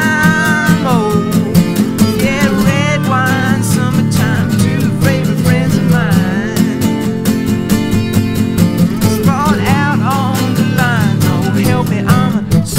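Band music with strummed acoustic guitar over a steady beat, and lead lines that slide up and down in pitch; no words are sung.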